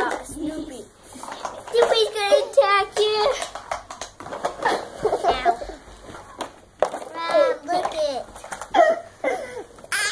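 Young children's voices: short high-pitched vocal sounds, child chatter without clear words, coming in several bursts with brief pauses between.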